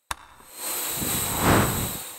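Logo intro sound effect: a sharp click, then a whooshing swell that builds to its loudest about a second and a half in and fades away.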